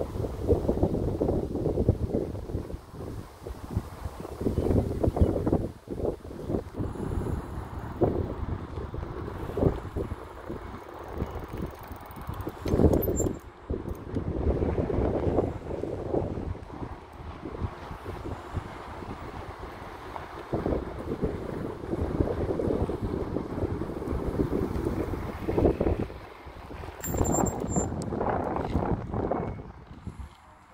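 Wind buffeting the phone's microphone in uneven gusts, a rough low rumble that swells and drops every second or two.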